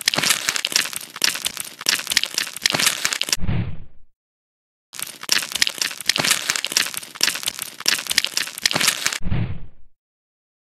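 Crisp crackling and crunching ASMR sound effect of a knife cutting through a brittle crust, in two stretches of about four seconds. Each stretch ends in a short low thump, with a moment of silence between them. The two stretches sound alike, as if one effect were played twice.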